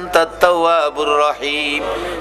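A man chanting an Arabic supplication in a drawn-out, melodic voice, the notes held and gliding.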